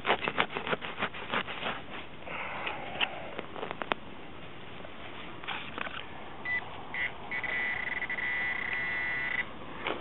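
A burst of scrapes and knocks from digging in the dirt, then a White's MXT Pro metal detector sounding: two short beeps followed by a steady high tone held about two seconds, the detector signalling a buried target.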